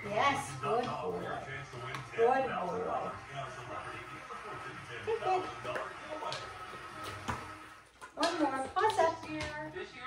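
Voices and music from a television game show playing in the room.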